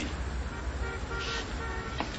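Faint steady background noise with a horn-like pitched tone sounding in short repeated toots from about a second in.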